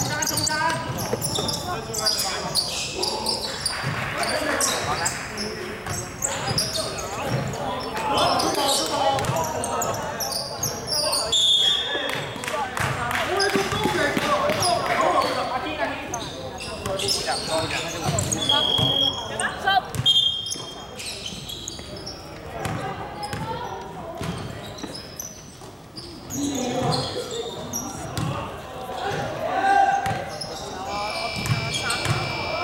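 Basketball game in a large, echoing indoor gym: the ball bouncing on the hardwood court, with players' and onlookers' voices calling out. A few brief high-pitched tones come about 11 seconds in and again around 18 to 20 seconds.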